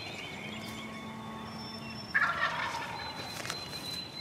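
A wild turkey gobbler gobbling once, loudly, about two seconds in: a quick rattling call that fades over about a second. Small birds chirp faintly behind it.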